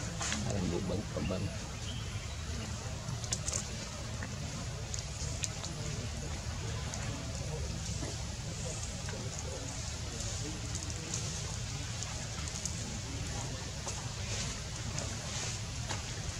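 Outdoor background: a steady low rumble with faint, indistinct human voices.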